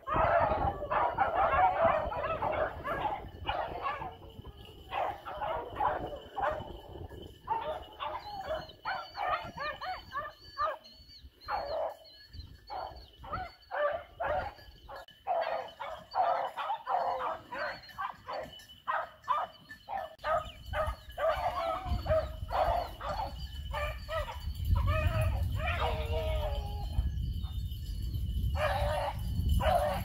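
A pack of beagles baying on a running rabbit, a dense, overlapping string of barks and howls from several hounds. A low rumble sits under them over the last few seconds.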